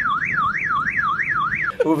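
Car alarm siren sweeping rapidly up and down in pitch, six quick rise-and-fall cycles, cutting off shortly before the end.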